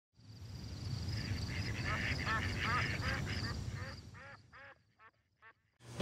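Waterfowl calling, a quick run of repeated honks over a low rumble, growing fainter and sparser and dying away near the end.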